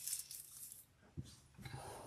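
Faint handling sounds on a craft table: a single small tap about a second in, then soft rustling as a plastic piping bag is picked up.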